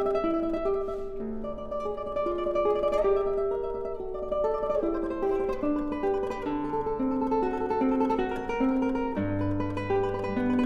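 Classical guitar played in tremolo: a rapidly repeated treble note runs over a moving bass and middle line. A deep bass note enters near the end.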